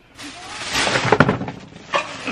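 Rustling handling noise and a few sharp knocks, loudest about a second in, as someone moves about and gets into a car.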